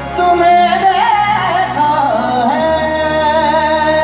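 Live concert performance: a male lead voice sings a wavering, heavily ornamented melodic line over band accompaniment with sustained bass notes, settling into long held notes about two and a half seconds in. It is heard from far back in a large hall.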